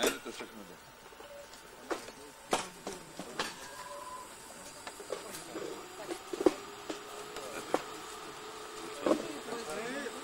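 Faint background chatter of people's voices, with a few short sharp clicks and knocks scattered through it.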